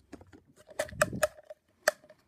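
Small plastic toy wheelie bins being handled by hand: several sharp plastic clicks and knocks, one of the loudest near the end.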